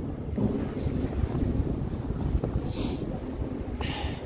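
Wind gusting on the microphone, an uneven low rumble.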